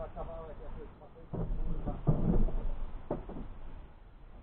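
Indistinct, muffled voice-like sounds inside a stationary car's cabin, with two short knocks, the second about three seconds in.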